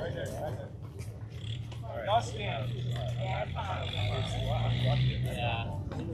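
Indistinct voices of players and spectators chattering and calling around the ball field, over a steady low hum, with one brief louder call about two seconds in.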